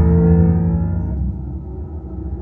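Deep cinematic drone from a Dolby Atmos demo trailer, played through a Sonos Beam Gen 2 soundbar: several steady tones held over a heavy low bass, loudest about a quarter second in and then easing off.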